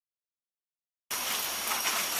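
Silence, then a steady hiss that starts abruptly about a second in.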